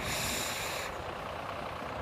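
A hiss from a vape draw lasts about a second and stops abruptly, over the steady low rumble of an idling bus engine.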